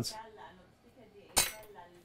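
A metal hand tool set down on the bench with a single sharp clink about one and a half seconds in.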